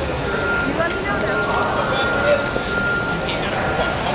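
Indistinct talking among people on a city sidewalk over steady street noise, with a thin steady high-pitched tone running through and a few short clicks.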